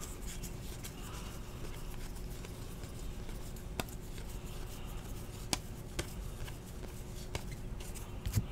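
2017-18 Donruss basketball trading cards being flipped through by hand: soft sliding and rubbing of card stock, with a few clicks as cards are set down or tapped, over a faint steady hum.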